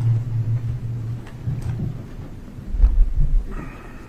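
Low rumbling and muffled thumps of microphone handling noise, loudest about three seconds in, as the witness handles a plastic water bottle near the courtroom microphone.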